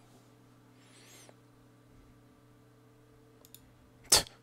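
Near silence with a steady low hum. A faint soft noise comes about a second in, and a few faint computer mouse clicks come near the end as a new page is opened.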